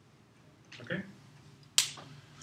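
A single sharp click, the snap of a whiteboard marker's cap being pushed shut, near the end.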